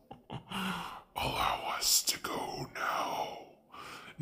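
A person whispering in a breathy, raspy voice, in several phrases with short breaks.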